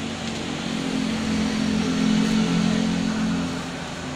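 A motor vehicle's engine hum that swells to its loudest about two seconds in, then eases off, as a vehicle passes by.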